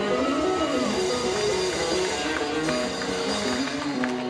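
A live band of electric guitar, upright double bass and acoustic guitar playing a song at steady volume.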